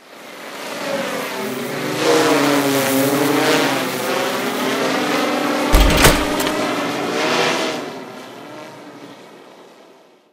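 Quadcopter drone rotor buzz, as a sound effect: a pitched whine that fades in, wavers up and down in pitch and fades away. A thud about six seconds in.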